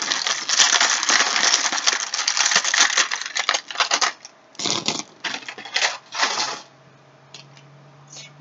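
Small charms and rune stones rattling and clinking together in a clear plastic tub as a hand stirs through them, a dense run of fast clicks that thins to scattered clinks about halfway through and stops near the end.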